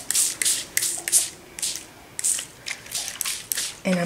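Hand-pump spray bottle squirting liquid dye onto paper in quick repeated sprays, about two or three a second with a short pause near the middle, soaking the sheet.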